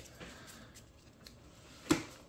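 Faint handling of Magic: The Gathering cards being gathered up on a playmat, small soft ticks and rustles, with one sharper click near the end.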